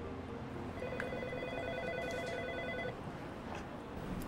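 An electronic ringing tone: one rapidly pulsing ring of several pitches, about two seconds long, starting about a second in, over a low steady room hum.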